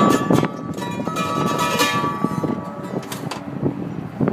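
Mandolin strummed, with a few strokes at the start and then notes ringing and dying away, the level falling towards the end.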